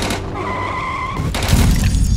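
Soundtrack of a documentary clip: music breaks off into a sudden burst of noise, a high steady squeal lasting about half a second, then a loud low rumbling burst, the loudest part, near the end.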